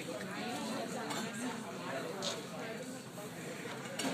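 Restaurant background: low, indistinct voices with faint clinks of dishes and cutlery.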